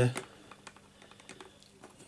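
A scattering of faint, irregular clicks and taps from small puzzle pieces being handled and fitted together on a table.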